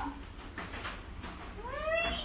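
A cat meowing: the end of a falling call right at the start, then a new call rising in pitch near the end.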